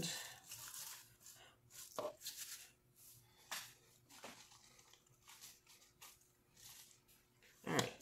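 Fresh spinach leaves rustling and a portion scoop lightly tapping as the leaves are scooped and handled, in scattered short strokes over a faint steady hum.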